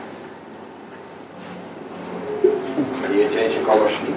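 Quiet room tone, then from about a second and a half in a voice murmuring low and indistinctly, with a single sharp click partway through.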